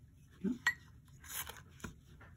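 Small handling noises from pH test strips, their plastic box and a glass bowl: two sharp clicks and a short scraping rustle between them.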